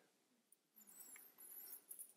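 Near silence: room tone, with a few faint, thin, high squeaks in the second half.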